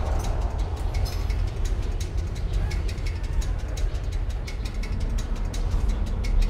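Moving commuter train heard from inside the carriage: a steady low rumble with rapid, irregular clicking and rattling.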